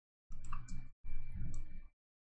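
Computer mouse clicking at the desk, heard in two short bursts that start and stop abruptly, with a faint steady high whine under them.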